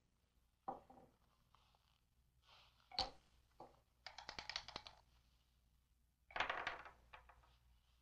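Dice shaken in a cup, a quick rattle of clicks, then thrown out onto a wooden table with a clatter about two-thirds of the way through. A single sharp knock on the table comes before the rattle.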